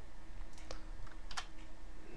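Computer keyboard keys pressed, two sharp clicks well under a second apart, over a faint steady hum.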